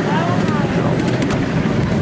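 Miniature steam railway train running along the track, heard from a passenger seat in the carriages: a loud, steady rumble with wind on the microphone.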